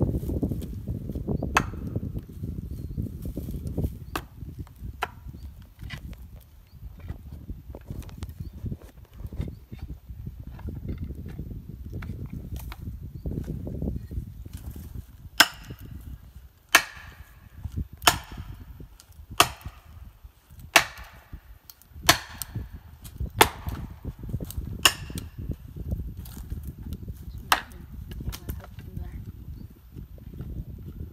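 Hatchet chopping into a tree trunk: lighter knocks at first, then a run of about ten sharp strikes, roughly one every second and a half, in the second half.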